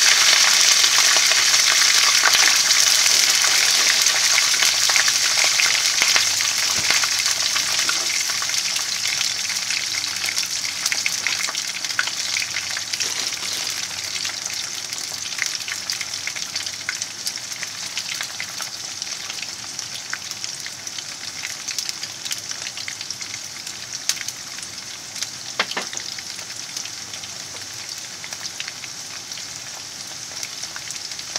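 A freshly added batch of potato sticks frying in oil in a frying pan: a dense sizzle with many small crackles and pops that slowly grows quieter.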